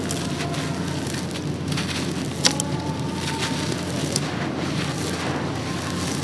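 Gritty concrete being crumbled by hand: a dense, continuous run of small crackles and crunches, with two sharper snaps about two and a half and four seconds in.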